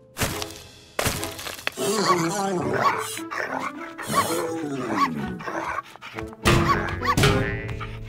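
Cartoon soundtrack: two sharp thuds near the start, then wordless, wavering cartoon vocal sounds over background music. A louder swell of sustained music chords comes in about two-thirds of the way through.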